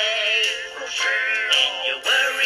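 A pop song with a processed, synthetic-sounding male singing voice holding long, wavering notes over the backing music.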